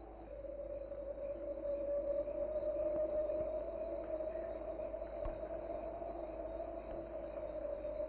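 A steady held drone of background music, two sustained low tones together, rising in just after the start and holding on, with a faint high chirping and a single faint click about five seconds in.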